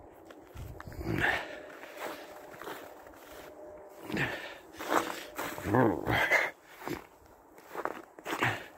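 Footsteps on icy, snow-dusted pavement, with short muffled voice sounds about four to six seconds in.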